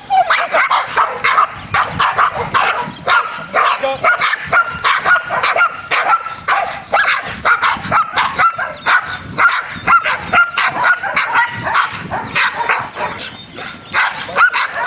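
Shepherd dogs barking and yipping rapidly and without pause, about three barks a second.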